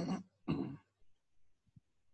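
A man clearing his throat: two short, loud bursts about half a second apart.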